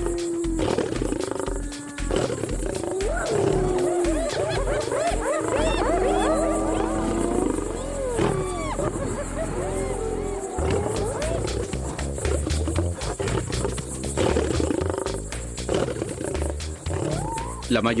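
Spotted hyenas calling in a fight with a lion over a carcass: many quick rising-and-falling yelps and whoops, thickest in the first ten seconds, with a lion growling among them and lower growling carrying on as the hyena calls thin out. Documentary music plays underneath.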